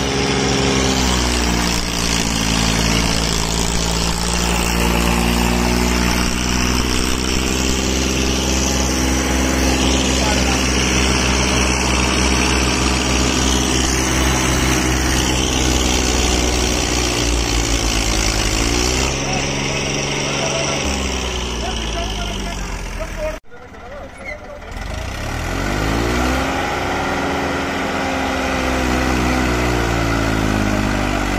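Massey Ferguson 245's three-cylinder diesel engine working at high revs under heavy load, hauling a sugarcane-laden trolley. The revs sag and climb again a few times, with an abrupt break about three-quarters of the way through.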